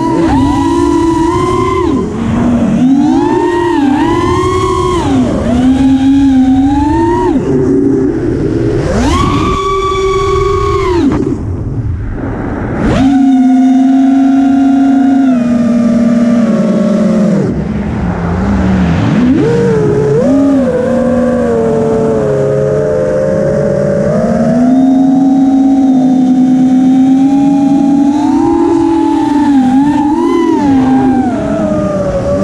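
FPV quadcopter's brushless motors (DYS Samguk Wei 2300kV) and propellers whining loudly, the pitch sweeping up and down with the throttle, over a haze of wind rush. The whine dips and quietens briefly about a third of the way through, then holds a steadier pitch.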